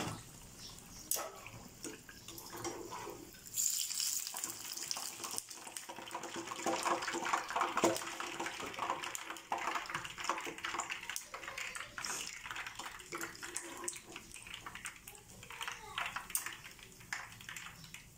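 Oil sizzling and bubbling in a frying pan as battered banana fritters deep-fry, louder from about four seconds in, with scattered light clinks of a metal spatula and wire strainer against the pan.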